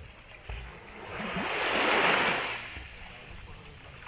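A small wave washing up onto a sandy beach, swelling and then fading away over about two seconds.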